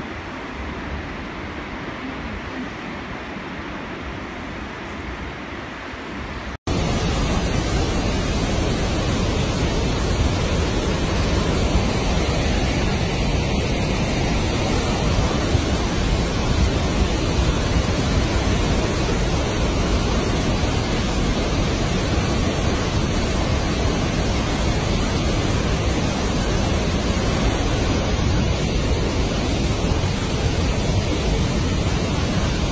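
Steady rushing of a muddy waterfall in heavy flood. About six and a half seconds in it cuts abruptly to a louder, steady rushing of a flood-swollen river pouring over a concrete weir.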